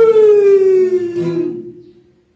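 A long drawn-out vocal note, a single high 'ahh' sliding slowly down in pitch and fading away near the end, with a guitar strum about a second in.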